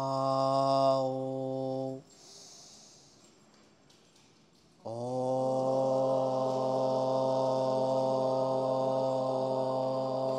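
Om chanted in a low, steady held tone: one Om that stops about two seconds in, then after a short pause with a breath, a second, longer Om from about five seconds in that is still going at the end.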